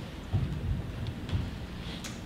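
Theatre audience laughing, heard as a muffled low rumble that swells a few times.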